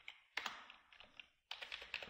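Faint typing on a computer keyboard: several separate key presses as a word is typed.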